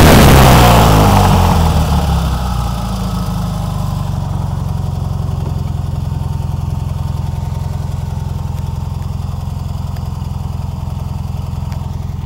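Tuned Fiat 500 Abarth 595's air-cooled two-cylinder engine, loud and high-revving at first, dropping back over the first two to three seconds to a steady idle.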